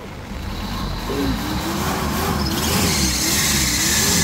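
Truck's diesel engine revving up and getting louder as the truck pulls away, with a loud rushing hiss building over the second half. A wavering pitched tone runs above the engine sound.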